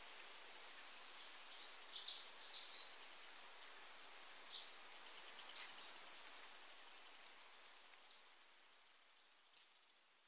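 Faint small birds chirping, a busy run of short high chirps that thins out in the last few seconds, over a soft steady outdoor hiss.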